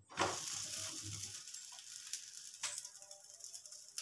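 Spinach chapati sizzling on a hot tawa as it is turned and pressed flat by hand. The sizzle starts suddenly, is loudest in the first second and then settles to a steady hiss, with a short knock against the pan about two and a half seconds in.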